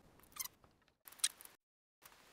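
Faint handling sounds of small parts on a desk: a short falling squeak, then a brief sharp click, after which the sound cuts out abruptly.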